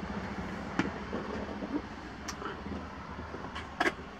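Quiet, steady low rumble of background noise with a few faint, sharp clicks spread through it.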